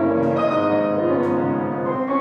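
Grand piano played solo: ringing held chords, with new notes struck about a quarter second in and again just past a second.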